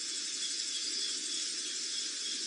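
Steady night-time ambience: a continuous high chirring hiss of nocturnal insects, with a thin steady high tone running through it.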